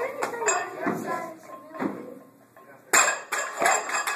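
Loaded barbell with bumper plates dropped onto a lifting platform about three seconds in: a sudden loud crash, then a couple of quicker knocks and clinks as the bar bounces and settles.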